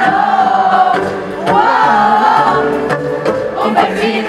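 Live concert music played loud through a PA: sung vocals holding long, wavering notes over a full band backing.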